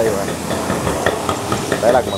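Busy street noise: a steady hiss of traffic and surroundings with voices talking in the background, and a nearer voice near the end.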